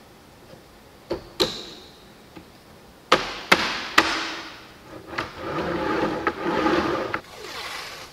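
Clicks and knocks of the laser-cut plywood roller carriage being handled on the press's metal rails, then a rolling, grinding rumble of about two seconds as the carriage and its PVC roller are pushed along the press bed.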